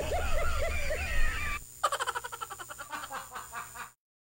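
Video-call ringing tone while an outgoing call waits to be answered: a warbling tune that rises and falls over and over, then switches about a second and a half in to a rapid, evenly pulsing tone.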